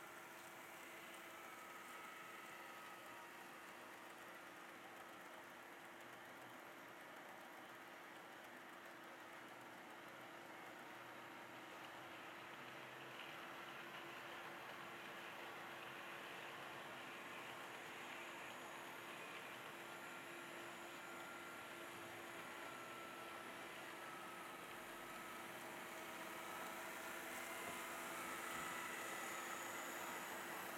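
HO scale model locomotives running on track: a faint, steady whir of electric motors and wheels on the rails, growing a little louder near the end as a train approaches.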